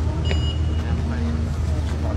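A steady low rumble with faint voices, and a short high electronic beep about a quarter second in from an automatic hand-sanitizer stand at a shop entrance.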